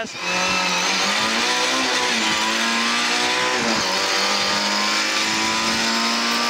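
Lada 2107 rally car's 1600 four-cylinder engine held at high revs under full throttle along a straight, heard from inside the cabin. Its note climbs slightly, breaks briefly about four seconds in, then holds steady.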